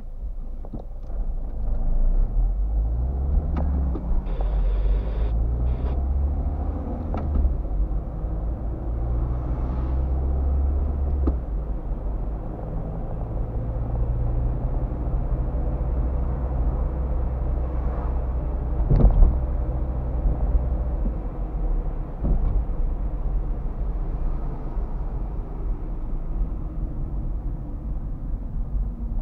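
Car engine and road rumble heard from inside the cabin as the car pulls away and accelerates, the engine pitch rising over the first few seconds, then running steadily at cruising speed. A single sharp thump sounds about 19 seconds in.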